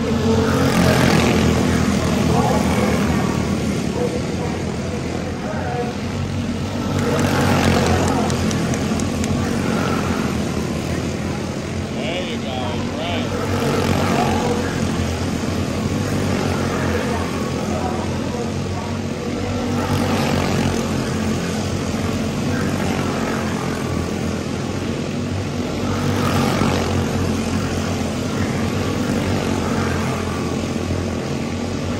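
A pack of Senior Honda quarter midget race cars running their small single-cylinder engines at racing speed around a short oval. The engine noise swells each time the pack comes past, about every six seconds.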